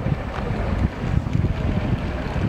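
Wind on the camera's microphone: a loud, uneven low rumble.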